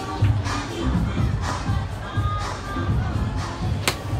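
Background music with a steady beat. Near the end, a single sharp crack: a golf club striking a ball off the hitting mat.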